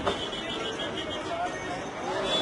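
Busy market street: voices of passers-by, with one sharp knock just after the start.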